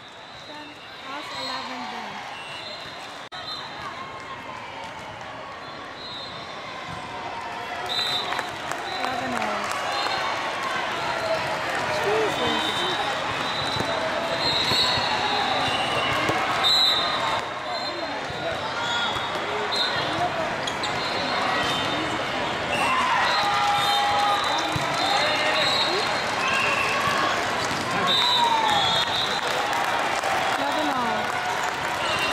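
Volleyball play in a large hall with several courts: a constant din of many voices and players calling, over which volleyballs thud as they are struck and bounce, and sneakers squeak briefly on the court. The din grows louder about eight seconds in.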